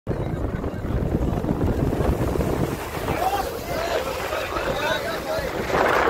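Sea surf against a rocky breakwater with wind buffeting the microphone, and a crowd of people talking from about halfway through; a wave crashes and splashes over the rocks near the end.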